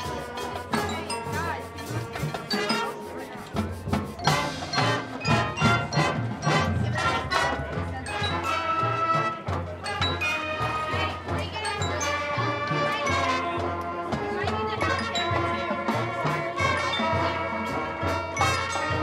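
Marching band playing: brass and woodwinds with a front ensemble of mallet percussion and timpani. A run of loud accented hits about four seconds in gives way to held chords.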